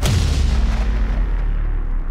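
A sudden deep boom, a cinematic impact hit, opening a sustained low rumbling drone in the dramatic soundtrack.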